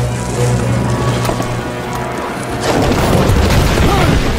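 Dramatic film score holding a low note. About two and a half seconds in, a loud rumbling crash of smashing rock and flying debris swells and builds to the end.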